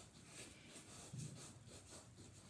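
Faint, scratchy strokes of a stick of blue chalk rubbed on black construction paper, several in a row.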